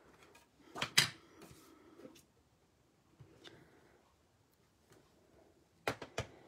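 Light knocks and taps of rubber stamping supplies handled on a tabletop as a cling stamp is inked and pressed onto cardstock. The loudest is a sharp knock about a second in, followed by a few faint taps, a quiet stretch and a click near the end.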